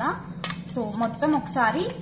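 Steel spoon stirring a watery mixture in a stainless steel bowl, with one sharp clink of spoon on bowl about half a second in.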